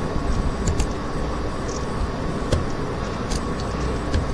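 A few sharp computer mouse clicks over a steady low background rumble and hiss.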